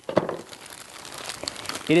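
Clear plastic wrapping crinkling as it is pulled off a Magic 8 Ball by hand.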